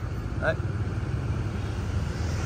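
Mazda BT-50 pickup's 3.2-litre five-cylinder diesel engine idling smoothly with a steady low hum.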